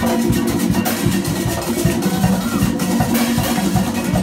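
Live comparsa percussion band playing drums in a steady, continuous rhythm, loud and dense with overlapping strokes.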